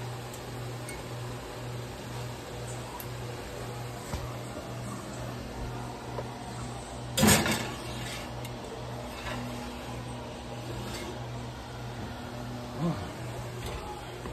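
A steady, low appliance hum with an even pulse, broken about seven seconds in by a loud clatter of a glass baking dish going onto a metal oven rack, then a lighter knock near the end.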